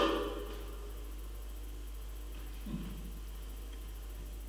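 Hall room tone with a steady low hum. The tail of a cough fades out at the start, and there is one faint short sound about two and a half seconds later.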